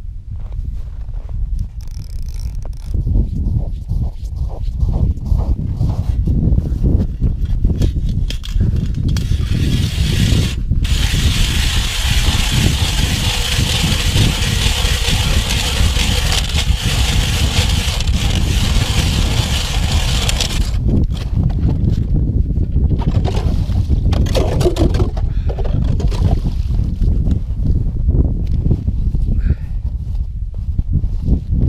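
Hand ice auger drilling a hole through lake ice: the blades cut with a steady grinding scrape for about ten seconds in the middle, over a low rumble that runs throughout.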